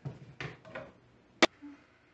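Kitchen handling noises at a water-bath canner on the stove: a few soft knocks, then one sharp click about one and a half seconds in.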